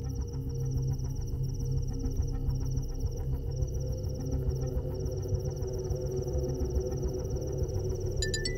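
Low, sustained drone of suspense film score, with crickets chirping in a fast, steady pulsing trill over it.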